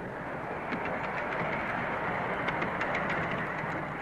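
Miniature railway train running on its track: a steady noise with a few faint light clicks.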